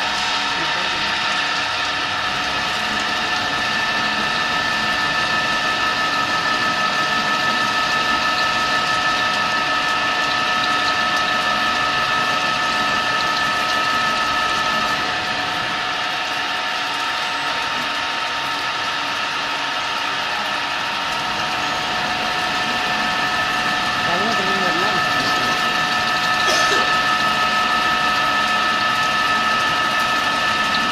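CNC milling machine slot-milling a metal ring in automatic mode: the spindle and end mill cut steadily, a constant whine of several high tones over a grinding cutting noise. One of the tones drops away for several seconds midway and returns, and there is a brief sharp sound near the end.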